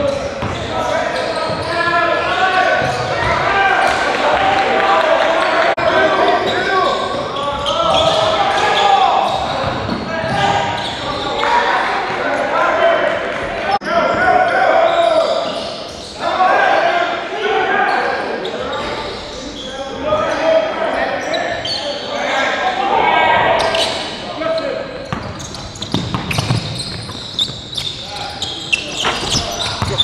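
Several voices talking and calling out in an echoing gymnasium, with a basketball bouncing on the hardwood court now and then.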